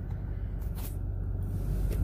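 Car engine running, a steady low hum heard from inside the cabin.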